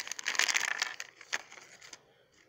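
Shiny foil blind-bag wrapper crinkling as it is handled. The crinkling is busiest in the first second, then thins out, with one sharp click about a second and a half in.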